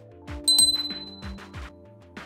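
A single bright bell ding about half a second in, fading over under a second: the notification-bell sound effect of a subscribe-button animation. It plays over background music with a steady beat.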